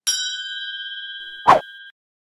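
Notification-bell sound effect: a bright ding that rings on and slowly fades. About one and a half seconds in comes a short, loud hit.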